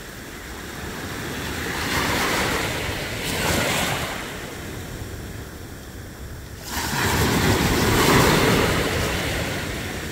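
Small waves washing in at the shore, swelling twice: gradually about two seconds in, then more suddenly and loudly about seven seconds in. Wind rumbles on the microphone.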